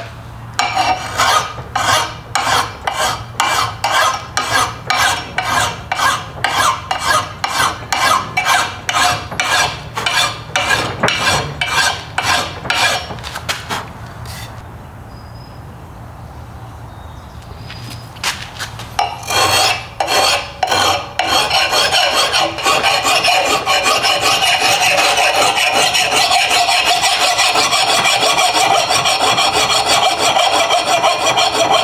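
A big, coarse mill file rasping across the steel edge of an old double-bitted axe in quick, even strokes, about two to three a second, stopping for a few seconds near the middle. It then starts again and runs as a denser, nearly continuous rasp. This is rough filing to take out chips and dings and raise a burr on the edge.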